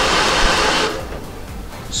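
Handheld hair dryer blowing air, loud for about the first second, then quieter.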